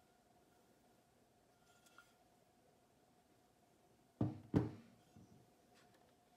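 Quiet room tone with a faint steady hum. About four seconds in, a short knock as the cast-iron pump volute is set down on a wooden tabletop, alongside a single spoken word.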